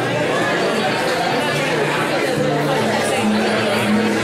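Two acoustic guitars playing, with sustained low notes, while people's voices chatter over them.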